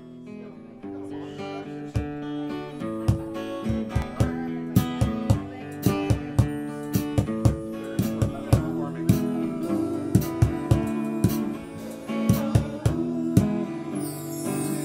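Live band playing an instrumental passage: strummed acoustic guitar with electric guitar and drums. The music swells in over the first couple of seconds, and the drums set a steady beat from about two seconds in.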